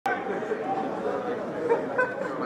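Several rugby players' voices talking and calling at once, too overlapped to make out words.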